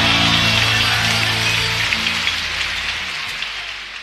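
Theatre audience applauding over the orchestra's final held chord. The chord stops about two seconds in, and the clapping fades out near the end.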